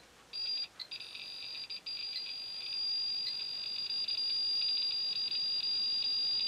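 Geiger counter sounding a high-pitched, almost unbroken beeping alarm that starts a moment in and grows louder about three seconds in. It is reacting to a UVC germicidal lamp held close, which the owner suspects is somehow interfering with its GM tube.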